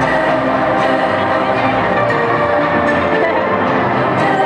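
Music playing steadily, with many held notes and no break.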